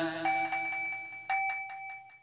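A bell struck twice, about a second apart, each strike ringing on and slowly dying away in a pause of the chanting.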